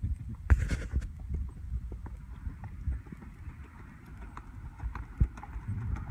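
Horse cantering on a soft dirt arena, its hoofbeats falling as irregular dull thuds over a steady low rumble, with a short hiss about half a second in.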